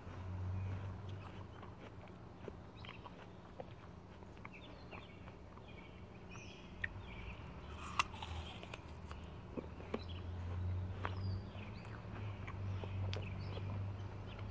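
A person chewing raw apple slices close to the microphone: a low chewing rumble that comes and goes, with small crisp crunches scattered through it. A sharper crunch of a bite comes about eight seconds in.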